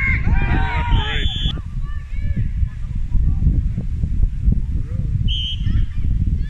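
Referee's whistle blown twice: a short blast about a second in, and another near the end. Players shout over it in the first second or so, with a steady low rumble of wind on the microphone underneath.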